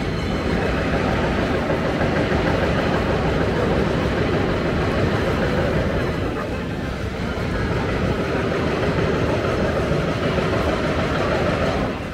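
Busy city street ambience: a steady wash of traffic noise mixed with the chatter of a passing crowd.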